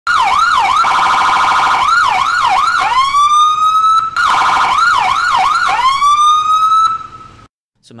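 An ambulance's electronic siren cycling through its tones: quick up-and-down yelp sweeps, a rapid pulsing warble, then a wail that rises and holds. The sequence plays twice, with a brief break about four seconds in, and the siren stops about seven seconds in.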